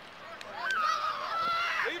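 One long, drawn-out, high-pitched shout from a person on the football sideline, held for about a second in the second half before a man starts calling out a player's name.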